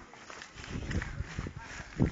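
Footsteps of a group of footballers jogging on dry dirt ground, an irregular run of dull thuds.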